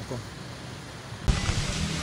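Faint, steady background hiss that jumps abruptly to a louder, even outdoor noise about a second in.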